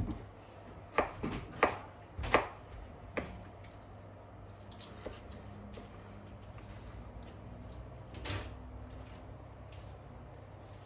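A kitchen knife knocking and cutting on a wooden cutting board as kohlrabi peels are cut and handled: about five sharp knocks in the first few seconds, then quieter handling and one more knock near the end.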